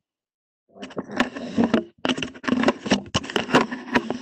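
A sheet of paper being folded and creased by hand, rustling with rapid sharp crackles. It starts about a second in, after a silent moment.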